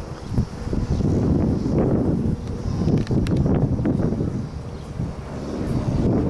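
Wind buffeting the camera microphone, a low rumble that swells and fades in gusts.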